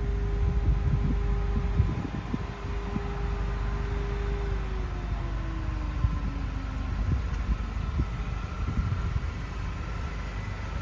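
A steady mechanical hum holding one pitch, then slowly falling in pitch for a couple of seconds about halfway through, over an uneven low rumble with scattered faint knocks.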